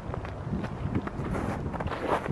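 Footsteps on snow: a run of irregular steps.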